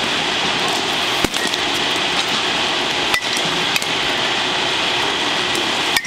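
Sharp knocks of baseballs and bat in a batting cage over steady background noise: four hits, the loudest about a second in, the last at the very end as the batter swings and the bat meets the ball.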